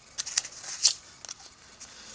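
Origami paper being folded and creased by hand: a few short crisp paper rustles and clicks, the loudest a little under a second in.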